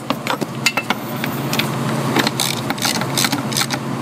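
Ratchet clicking in short, irregular strokes as a socket snugs the air-test adapter fitting into the ICP sensor port of a 6.0L Power Stroke diesel, over a steady low hum.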